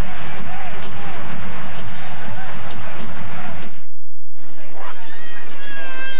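A dense wash of noise with voices in it that cuts off abruptly about four seconds in, followed by a brief silence. Near the end, a baby starts crying.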